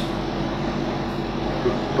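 A steady droning hum with a hiss over it, unchanging through a pause in a man's speech.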